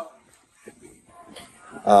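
A brief lull in conversation with faint background chatter, then a man's voice coming in with a low "uh" near the end.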